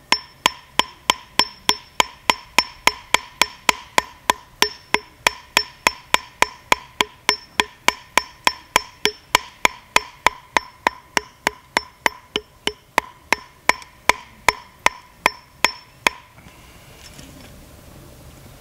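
Piton hammer striking nylon webbing laid over a rounded river rock, about three blows a second, each blow ringing briefly; the blows go on until about 16 seconds in, when the webbing is cut through. The rounded edge of the rock makes the cut slow.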